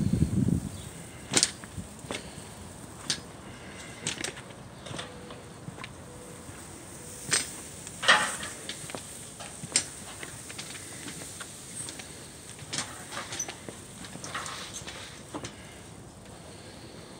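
Irregular light clicks and knocks, one every half second to two seconds, over a quiet background: footsteps and camera-handling noise from someone walking across a job site.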